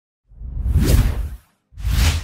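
Two whoosh sound effects accompanying an animated logo reveal: a longer rushing swell lasting about a second, then a shorter one starting near the end.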